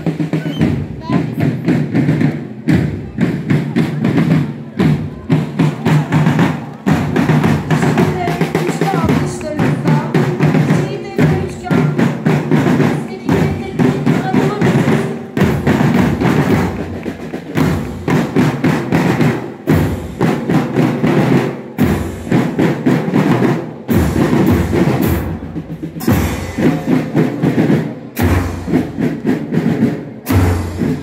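Bugle-and-drum marching band playing a march, bass drums and snare drums beating a steady rhythm with bugles sounding over them.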